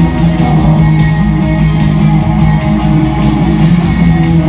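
Live indie shoegaze band playing an instrumental passage without vocals: strummed electric guitars and bass holding sustained chords over drums keeping a steady beat.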